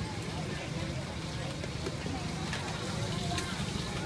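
Street-food stall ambience: background voices chattering over a steady low rumble, with a couple of faint clinks of utensils.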